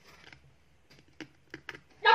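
Faint rustling and a few light clicks, about four in the second half, from artificial plastic flower stems being handled and adjusted in a vase.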